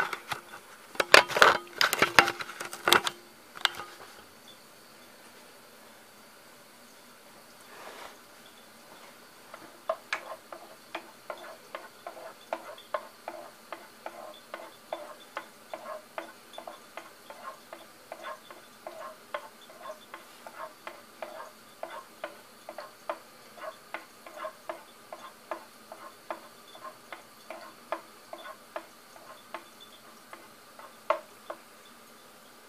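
Metal clattering for the first few seconds. About ten seconds in, tomato soup in a saucepan over a small propane torch starts popping and ticking as it heats, a steady run of small pops about two or three a second.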